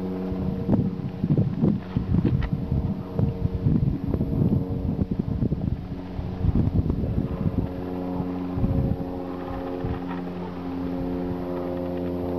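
Paramotor engine droning steadily while flying, a little louder near the end, with wind buffeting the microphone in gusts through the first two-thirds.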